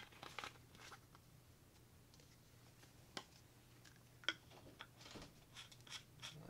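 Near silence with faint handling sounds: light rustles of a plastic oil bottle and a few sharp small clicks, the clearest about three and four seconds in, as the vacuum pump's plastic oil-fill plug is put back on, over a faint low hum.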